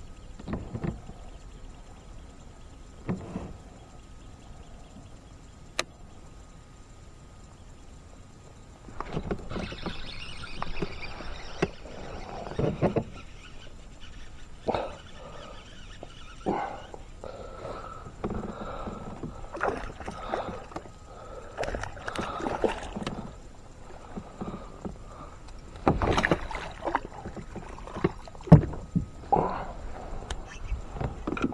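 A largemouth bass being fought and landed beside a kayak. After a quiet stretch with a few isolated clicks, water splashing and handling noise start suddenly about nine seconds in and go on with short knocks against the hull. The loudest clatter comes near the end as the fish is lifted out of the water.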